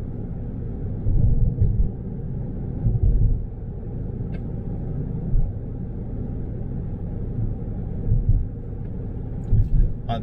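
Road and engine noise inside a moving car's cabin: a steady low rumble, with a few short louder low swells.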